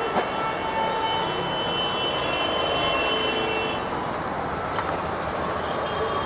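Steady din of vehicles on a busy street, with a high-pitched squeal held from about one and a half to nearly four seconds in.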